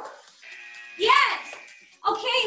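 A steady electronic tone from a workout interval timer, held from about half a second in for about a second and a half. About a second in, a woman's short rising-and-falling vocal call sounds over it.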